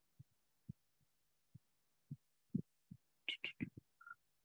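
Faint, irregular soft thumps, then a quick run of four or five sharper clicks near the end, over a faint low steady hum: small handling and desk noises picked up by a computer microphone.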